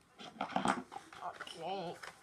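Cardboard packaging rustling and scraping as a Furby Boom is pulled from its box, a run of crackles and knocks in the first second. Near the end comes one short call that rises and falls in pitch.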